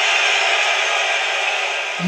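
Loud, steady arena crowd noise from a televised wrestling show, a dense, even roar of many voices with no single voice or tune standing out.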